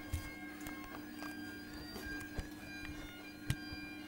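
Electrolux EW1006f front-loading washing machine running on its rinse stage, its drum turning with water and suds: a steady droning hum at a few fixed pitches, with faint scattered ticks.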